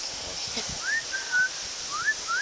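A string of short whistled notes, most sliding quickly upward and one held level, starting about a second in, over a steady background hiss.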